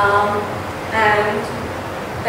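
A woman's voice: two short spoken sounds, one at the start and one about a second in, over a steady background hiss.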